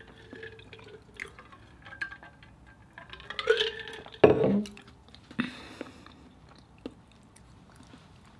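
Drinking from an insulated water bottle: liquid sloshing and swallowing, then a sharp knock just after four seconds in as the bottle is set down on the wooden table. A second, lighter click follows about a second later.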